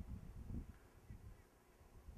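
Faint outdoor ambience: a low rumble of wind on the microphone, stronger in the first second, with faint distant voices.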